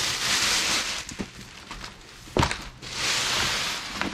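Clear plastic wrapping rustling and crinkling as it is pulled off a long rolled awning bag: two long rustles, one at the start and one near the end, with a few sharp knocks between.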